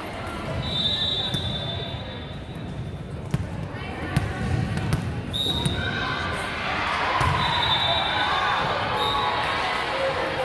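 Volleyball rally on a gym court: sharp hits of the ball about three and four seconds in, sneakers squeaking on the hardwood floor several times, and players and spectators calling out and cheering in the second half.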